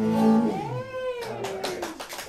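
A live band's final held note rings and stops about half a second in, followed by a short call that rises then falls in pitch, and then a small audience starts clapping.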